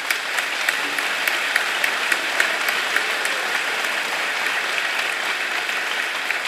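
Large hall audience applauding steadily: a dense, even clatter of many hands clapping.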